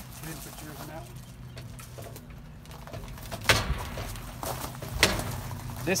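Two sharp clacks about a second and a half apart, as hot-stick-mounted meter probes are set against the elbow connectors in a pad-mounted cabinet, over a steady low electrical hum.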